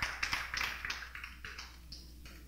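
Hands clapping: a few scattered claps that die away over about a second and a half.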